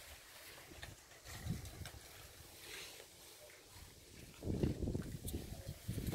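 Faint background with a few soft clicks, then from about four and a half seconds in a louder low rumbling rustle of a handheld phone being moved about, its microphone rubbing and knocking against clothing.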